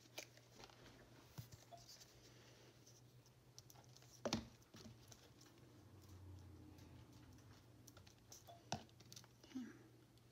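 Near silence: faint handling of craft supplies, paper, lace and glue bottles, on a cutting mat, with a few light knocks as they are picked up and set down, the loudest about four seconds in and again near the end.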